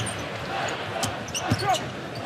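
A basketball bouncing on a hardwood court, with a few sharp knocks, over steady arena crowd noise.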